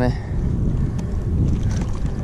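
Wind buffeting the camera microphone in a steady low rumble, with a faint click about a second in.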